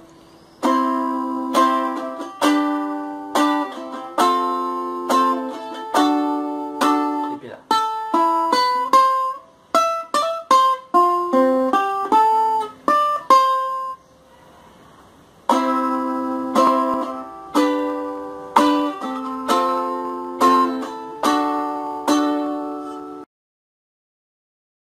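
Ukulele strumming the chords C, G, F and D in a steady pattern, then a run of single picked notes, a short pause, and more strummed chords that cut off abruptly near the end.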